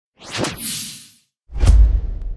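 Two whoosh sound effects: the first sweeps through about a quarter second in and fades, the second comes about a second and a half in and lands on a deep, low boom that carries on.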